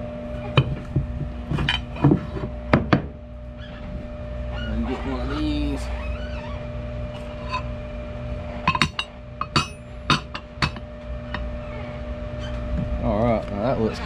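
Aluminium soft-plastic bait mold plates clinking and knocking as they are pulled apart and handled: two clusters of sharp metal clicks, over a steady hum.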